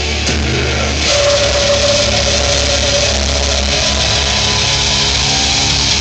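Death metal band playing live: heavily distorted guitars and bass over a dense, steady low rumble, with one held guitar note from about a second in.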